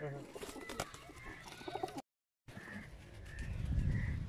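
Domestic pigeons cooing, with faint voices; the sound drops out completely for about half a second midway, and a low rumble builds near the end.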